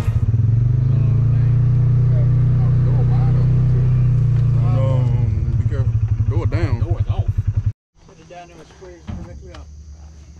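A vehicle engine running steadily with a low hum, voices faintly over it, pulsing more quickly toward the end. It cuts off suddenly about eight seconds in, leaving quieter outdoor sound with faint voices and a single knock.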